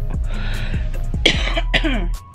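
Background music with a steady beat, and a person coughing about a second in.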